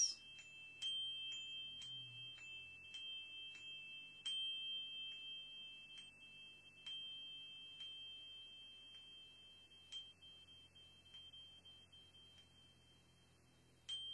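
A chime struck lightly with a mallet about once a second, ringing on in a steady high two-note tone. The strikes grow softer toward the end.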